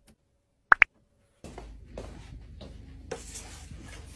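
Two short electronic beeps from the touch controls of a MiniJ wall-mounted mini washing machine as its button is pressed, followed about half a second later by a steady low hum and hiss.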